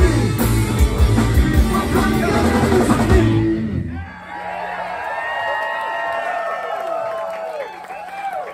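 Live garage-rock band, with electric guitars, a drum kit and a shouted lead vocal, playing the last bars of a song and stopping about halfway through. The crowd then cheers, whoops and claps.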